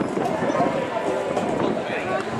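Indistinct chatter of several people talking in the background.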